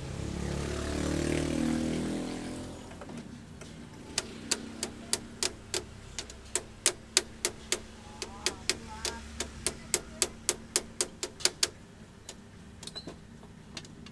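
A swell of rumbling noise rises and fades over the first three seconds. Then come sharp clicks in a steady train, about four a second for some seven seconds, as a screwdriver is worked on a screw in the photocopier document feeder's metal side plate during reassembly.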